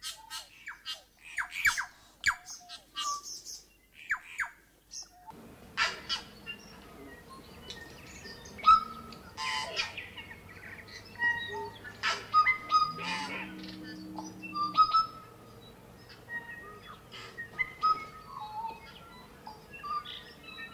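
Forest birds singing, a busy mix of short chirps, whistles and trills from several birds. A faint, steady low hum sits underneath after about five seconds.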